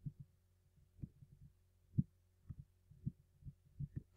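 Faint, irregular low thumps and knocks from hand-drawing on the computer, the pen or mouse working against the desk, the loudest about two seconds in. A steady low electrical hum runs underneath.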